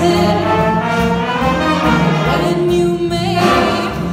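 Jazz big band playing live, with saxophones, trumpets and trombones, behind a female singer.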